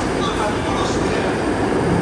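Metro train running, heard from inside the carriage: a steady rumble of wheels and car noise, with indistinct voices mixed in.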